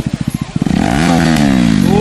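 KTM Duke single-cylinder motorcycle engine with an aftermarket exhaust, idling with an even pulsing beat, then revved once: the note climbs to a peak about a second in and falls back toward idle.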